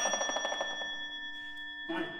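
A struck metallic percussion note from a chamber ensemble rings on as several steady high tones, fluttering rapidly for the first moment, then sustaining and slowly fading.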